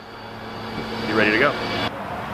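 A steady outdoor rumble growing steadily louder, with a brief snatch of voice about a second in; it cuts off abruptly near the end.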